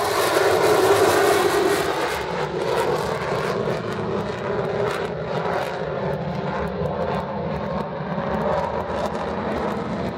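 Jet roar of an EA-18G Growler's twin GE F414 turbofans as the fighter pulls up into a climb. The high hiss dies away after about two seconds and the low rumble slowly fades as it climbs away.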